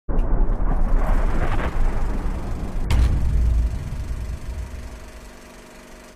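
Cinematic intro sound effect for a logo animation: a deep rumbling build, a sharp booming hit about three seconds in, then a held tone that fades out.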